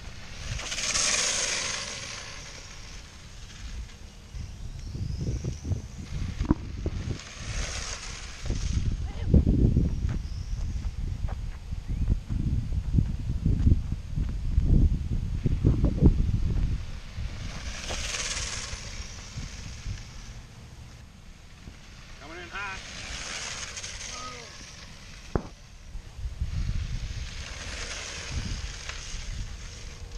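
Radio-controlled drift car running on foam tyres over asphalt, heard close up: uneven road rumble and wind on the microphone, with about five short hissing slides.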